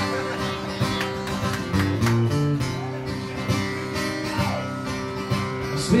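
Acoustic guitar strummed through a song's opening chords, with a male voice starting to sing at the very end.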